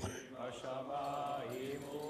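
A cantor chanting the Torah reading in Hebrew cantillation, one voice on drawn-out, slowly gliding notes, heard faintly.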